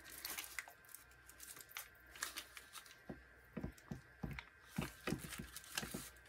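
Newspaper packing crinkling and rustling in short, irregular crackles as hands tug at it, busiest in the second half.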